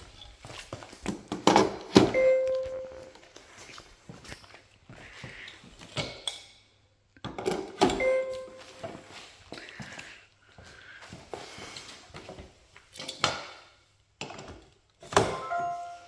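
Aluminium legs of a Raizer lifting chair knocking and clicking into its motor unit, each click followed by a short electronic chime from the chair confirming that the part is properly locked in. This happens three times: about two seconds in, around eight seconds, and near the end.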